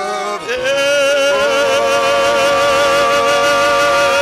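A man singing a worship song through a microphone and PA, holding one long note from about half a second in, after a brief break in the voice.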